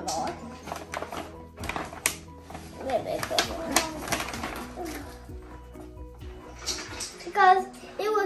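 Soft background music of steady held notes, over scattered clicks and rustles of burger buns and a plastic bread bag being handled, with a child's voice briefly.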